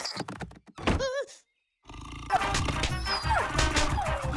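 Cartoon sound effects: a quick series of knocks and thunks with a short wavering pitched sound among them. Then a brief silence, and fast-paced chase music starts about two seconds in.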